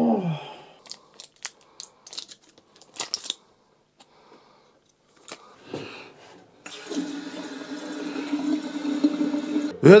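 A few sharp clicks and knocks, then a bathroom tap running into a washbasin: a steady rush of water with a low hum, cutting off abruptly near the end.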